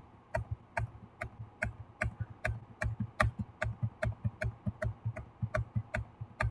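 A steady run of sharp clicks from a computer mouse or keyboard, about two or three a second, coming a little faster in the second half, as CAD features are deleted one after another.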